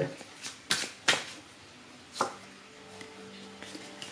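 Oracle cards being handled and a card set down on the table, making a few light taps and flicks.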